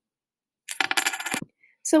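Small counting discs clattering in a plastic ten frame tray as the full tray is moved, a rapid run of clicks lasting under a second.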